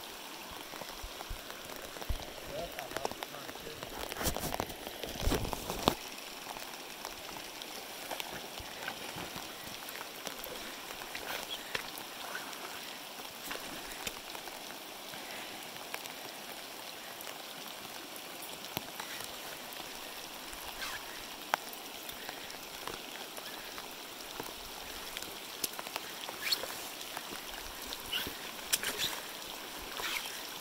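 Steady rain falling on the river and the surrounding rocks, a fine even hiss over the flowing water, with scattered close drop ticks; the ticking thickens about four to six seconds in and again near the end.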